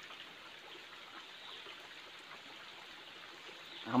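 Faint, steady trickle of a small stream running over rocks.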